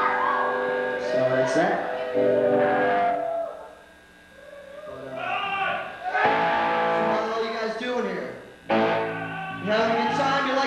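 A live rock band playing a slow ballad: electric guitar with long, bending notes and a singer's voice over it. The music drops low about four seconds in, swells back, and comes in suddenly loud just before nine seconds.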